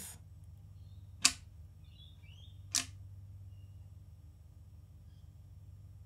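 Two short sharp clicks about a second and a half apart, from the footswitches of a Valeton GP-200LT multi-effects pedal being pressed by hand together, over a faint low hum.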